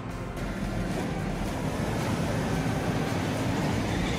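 Wind rushing and buffeting over a handheld microphone, a steady low rumbling noise that starts about half a second in, with faint background music underneath.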